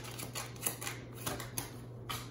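A deck of tarot cards being shuffled by hand: a quick, irregular run of crisp card clicks, about five or six a second, over a steady low hum.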